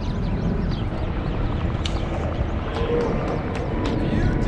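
Steady low rumble of outdoor city noise, with a few sharp clicks about two seconds in and again near the end.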